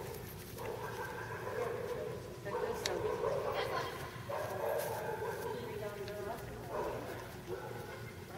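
Indistinct voices echoing in a large indoor hall, in several short stretches, with a brief sharp click about three seconds in.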